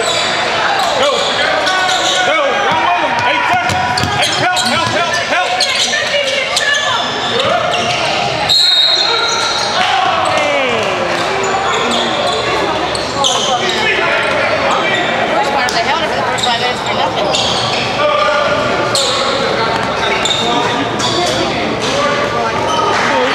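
Echoing gymnasium sound of a basketball game: a basketball bouncing on the hardwood court amid the voices of players and spectators. A short, high referee's whistle sounds about eight and a half seconds in.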